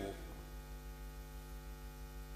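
Steady electrical mains hum from the microphone and sound-system chain: one low, unchanging buzz with a stack of even overtones and no other sound on top.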